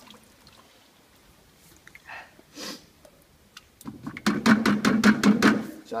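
Oil-based white undercoat paint pouring from a tin into a plastic bucket. It is faint at first, then loud and rapidly pulsing for about the last two seconds.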